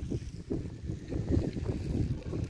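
Wind buffeting a phone's microphone: an uneven low rumble, with some handling noise as the phone is swung.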